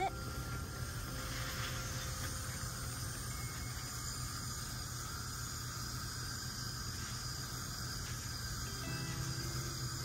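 Steady outdoor background noise: a low hum with a faint hiss and no distinct events.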